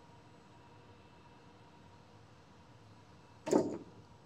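Near silence: gym room tone while the barbell is set up. About three and a half seconds in comes one short sound as the snatch is pulled and caught.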